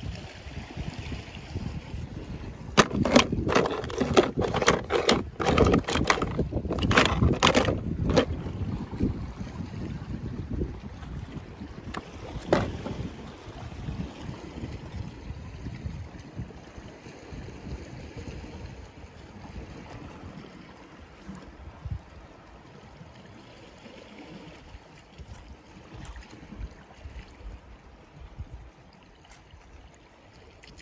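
Seaside ambience: sea water washing on rocks and wind on the microphone. A run of loud knocks and rustles comes about three to eight seconds in, with one more a few seconds later, and then the sound grows quieter.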